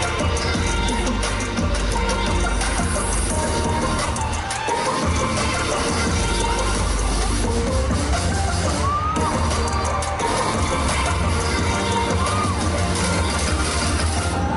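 Loud live pop dance music through a concert PA with a heavy bass, recorded from within the audience, with a crowd cheering.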